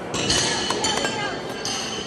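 Several sharp metallic clinks, each with a short high ring, over people talking.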